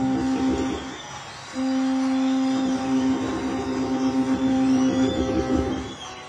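Blues harmonica played cupped against a handheld microphone. A short phrase is followed by a brief break about a second in, then one long held note that wavers toward the end.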